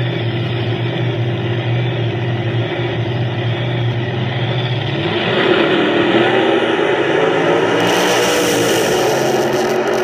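Two nostalgia altered drag-racing engines idling steadily at the starting line, then revving up about five seconds in and running at full throttle as the cars launch down the track. Heard off a live stream played through a computer's speakers.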